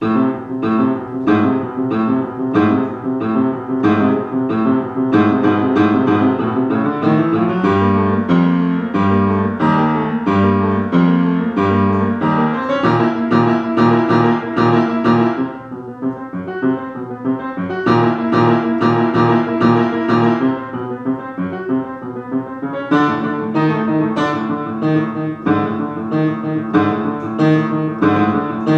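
Upright piano playing a grade 2 exam piece as a teacher demonstration: a steady run of short struck notes, with heavy low bass notes about a third of the way through and a briefly softer passage near the middle.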